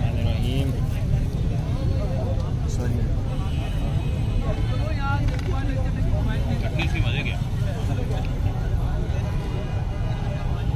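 People's voices talking in the background over a steady low rumble, with no single voice standing out.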